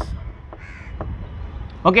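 A few faint taps of chalk on a blackboard as writing finishes, and a single short bird call about half a second in.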